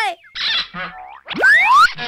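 Cartoon boing sound effect: springy tones sweeping quickly upward in pitch, loudest about one and a half seconds in, marking a character's jump.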